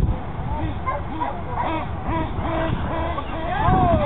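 Distant voices, heard as short rising-and-falling calls over wind rumble on the microphone.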